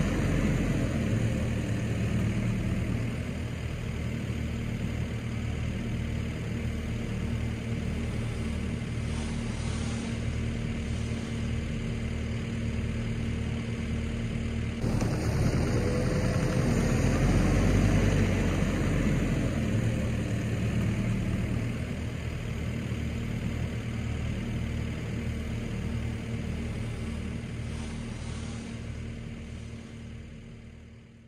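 Skid steer loader engine running steadily as the machine drives, with a constant low hum and an even low pulsing; it grows louder a little past halfway and fades at the end.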